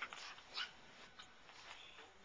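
West Highland white terrier making a few faint, brief whining sounds while it asks for a treat.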